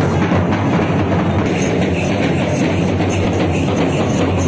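Traditional Kerala festival drums played together in a fast, dense, unbroken beat.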